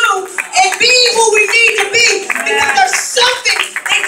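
A woman preaching loudly into a microphone over the PA system, with the congregation clapping.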